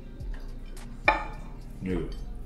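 A plate set down on the counter with a single sharp clink about a second in, ringing briefly.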